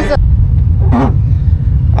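Steady low rumble of an off-road vehicle driving over sand dunes, with a brief voice about a second in.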